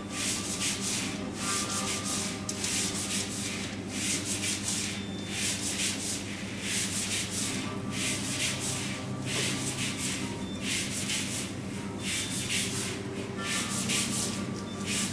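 Repeated rubbing or scratching strokes, irregular at about one or two a second, over a low steady hum.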